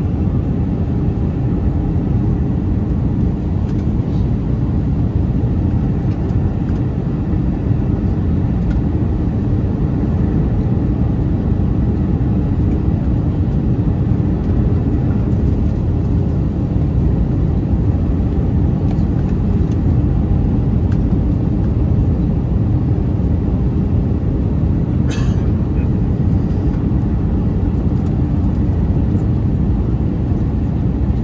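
Steady cabin noise of an Airbus A319 on approach, heard from a window seat beside the wing: a deep, even rumble of airflow and its IAE V2500 turbofan engines at approach power. A brief faint click near the end.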